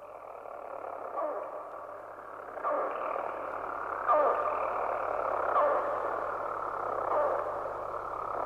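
Intro to a death metal track: a muffled, thin-sounding recorded passage with a falling sweep about every second and a half over a low steady hum, growing louder.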